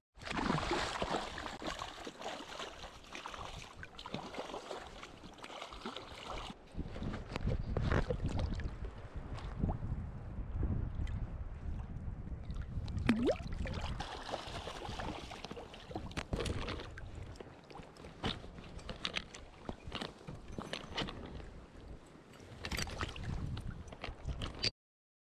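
Water splashing and sloshing as a hooked fish thrashes and rolls at the surface beside a boat, with many short sharp splashes, and wind rushing on the microphone in the first few seconds.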